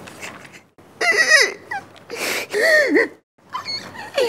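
A man crying in exaggerated, wailing sobs: two long cries that rise and fall in pitch, after a fainter whimper at the start.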